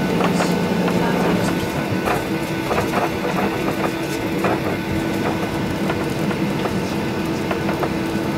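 Cabin sound of a Boeing 737-800 taxiing, heard from a seat over the wing: a steady hum from its CFM56 engines and air system, whose pitch steps up about one and a half seconds in, with frequent light clicks and rattles from the cabin fittings as the aircraft rolls and turns.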